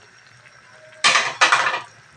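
Two short clattering scrapes of a utensil against a cooking pan and the snail shells in it, about a second in, one right after the other.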